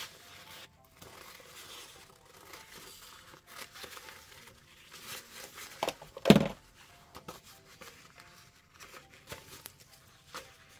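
Scissors snipping through a thin paper napkin, then the napkin rustling as it is handled, with one louder crackle about six seconds in.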